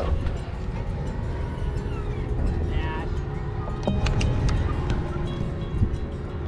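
Boat motor running as the boat moves off, with a steady low rumble of engine and wind on the microphone, under background music.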